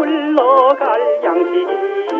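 Early-1960s Korean trot song playing from an old LP: a male singer's voice with wide vibrato over a small band. The sound is thin and narrow in range, with no deep bass and little top.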